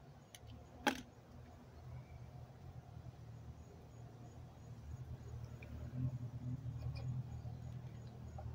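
A lighter clicks, sharply, about a second in, as it lights a small clump of homemade alcohol-and-diatomaceous-earth fire gel. A faint low rumble follows while the gel burns.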